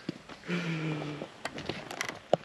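A short, steady hummed 'mmm' from a man's voice, about three-quarters of a second long, followed by a few light clicks near the end.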